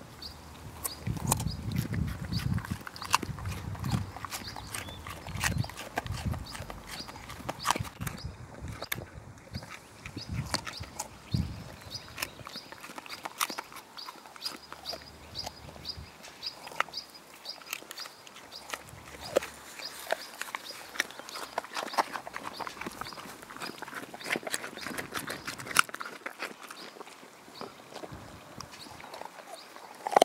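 Polish Lowland Sheepdogs crunching and chewing raw carrots, with irregular sharp crunches throughout.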